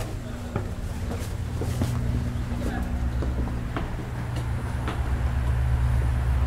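Footsteps on concrete stairs, short regular steps over a steady low hum, with a low rumble growing louder toward the end.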